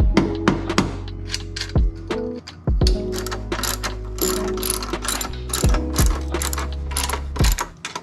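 Socket ratchet clicking in quick runs as the strut bar's nuts are run down and tightened on the strut tower studs.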